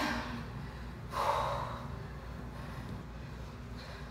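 A woman breathing hard from exertion during a Swiss ball ab workout, with one loud, sharp breath about a second in that lasts about half a second.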